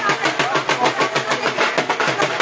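Dhol drum beaten in a fast, even rhythm, over the voices of a crowd.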